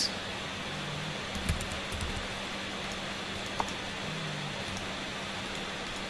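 Steady background hiss and low hum, with a few faint clicks from a computer keyboard and mouse as a search keyword is typed and items are clicked.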